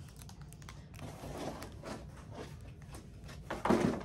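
Faint, irregular crinkling and rustling of plastic packaging, with a short louder sound near the end.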